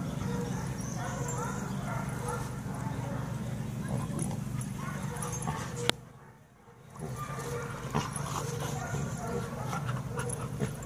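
A group of dogs vocalizing as they play and wrestle together. A sharp click about six seconds in, after which the sound drops away for about a second before coming back.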